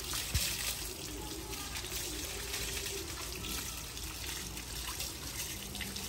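Water from a garden hose running steadily over a German Shepherd's coat and splashing onto a wet concrete floor.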